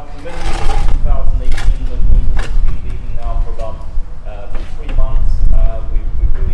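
A man speaking to a gathering, over a steady low rumble.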